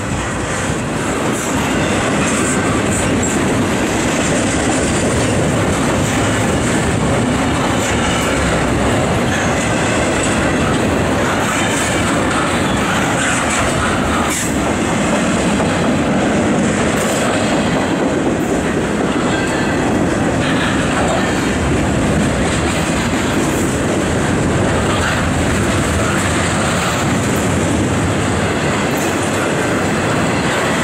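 Intermodal freight train cars (double-stack containers and trailers on flatcars) rolling past close by: a loud, steady noise of steel wheels on the rails.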